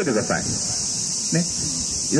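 Cicadas droning in a continuous, high-pitched buzz, with a few short snatches of voices near the start and about a second and a half in.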